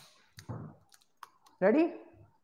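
A few small sharp clicks, the first right at the start, between two short bits of a man's voice. The second bit of voice, near the end, is the loudest sound.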